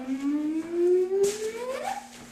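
A person humming one long, rising tone, slowly at first and climbing faster near the end, imitating the robot's batteries charging up.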